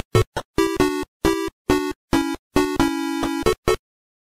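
Synthesizer logo jingle played in choppy, stuttering bursts of chords, about eight short blasts each cut off abruptly, ending suddenly near the end.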